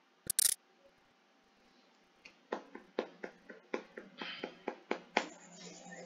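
Hand claps, about three to four a second, faint and thin through a video-call connection. A steady hiss comes in near the end.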